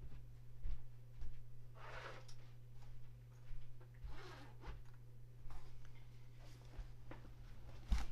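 A few short swishing, zip-like rustles of a flute case being handled. They sound over a steady low hum.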